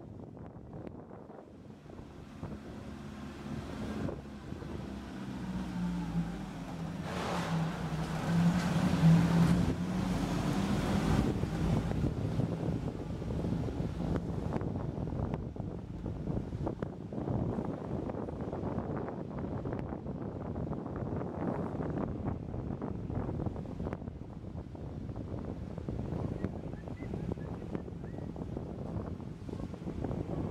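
A car driving slowly through a concrete parking garage: a low engine hum that grows louder over the first several seconds, then a steady, rough rumble of engine and tyres.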